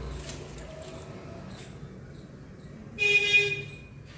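A single short horn toot, one steady pitched blast of about half a second, about three seconds in, over a faint background.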